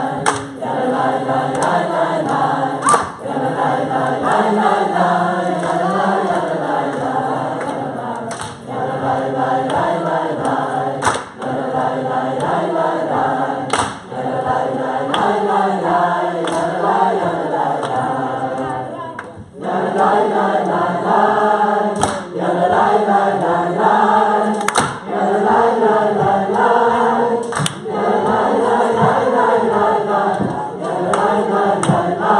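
A congregation singing a wordless nigun together a cappella, with a sharp hand clap about every three seconds marking the beat. The singing breaks off briefly a little past halfway, then picks up again.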